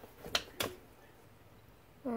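Two short light taps a quarter second apart as a plush toy is moved across a plastic toy house.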